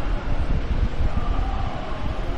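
Steady low rumbling background noise with a faint hum.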